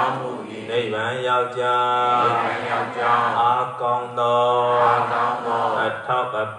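Buddhist chanting in Pali: one continuous melodic recitation with long drawn-out vowels and only brief pauses for breath.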